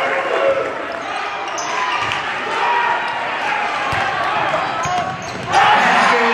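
Gymnasium crowd noise with many voices talking and a basketball bouncing on the court floor. The crowd gets suddenly louder about five and a half seconds in as a player goes up for a dunk.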